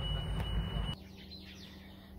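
Renault Grand Scenic's dashboard warning sounding a steady high beep tone, warning that the electronic parking brake is off; it cuts off abruptly about a second in, leaving a quieter background with faint chirps.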